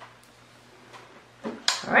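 Quiet room tone with a faint steady hum and a few soft ticks from hands handling hair. Near the end there is a sharp louder sound, then a woman starts to speak.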